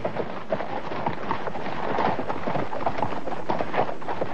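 Many horses' hooves galloping together, a dense, steady clatter of a mounted troop on the move (a cartoon sound effect).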